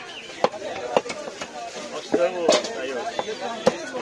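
Heavy cleaver chopping pangas catfish on a wooden stump chopping block: a series of sharp chops, roughly one or two a second, with voices talking in the background.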